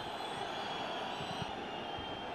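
Faint, steady stadium crowd noise from a football ground.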